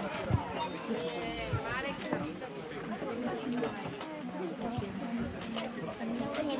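Background chatter: several people talking at a moderate level, with a few short clicks.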